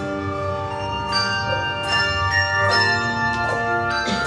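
Handbell choir ringing a piece on brass handbells: chords struck about once a second, each ringing on and overlapping the next.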